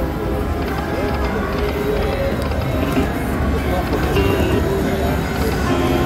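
Buffalo Chief video slot machine playing its game music and spin sounds while the reels spin, over a steady low hum of casino background noise.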